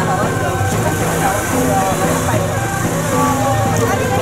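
Steady low hum of a vehicle engine running, with people's voices talking and calling over it.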